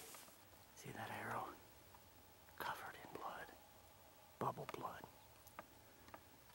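A man whispering: three short, hushed phrases about a second and a half apart, with little else heard between them.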